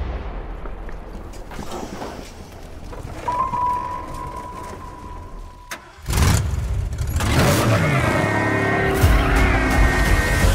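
Film-trailer sound design: a low rumble fades away, then a steady high ringing tone cuts off with a sharp click near the middle. A car engine comes in suddenly and loudly, and from about seven and a half seconds a high wavering squeal joins it as the Ecto-1, a converted 1959 Cadillac, slides through a U-turn with its tyres smoking, over a music bed.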